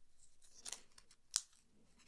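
Faint handling sounds of a small numbered sticker being taken off its sheet: a few light, sharp clicks, the sharpest about one and a half seconds in.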